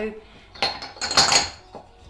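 A metal utensil clattering and scraping in a stainless steel pot, mostly in the middle second: rose water is being mixed into melted beeswax and oil, with the beeswax acting as the emulsifier.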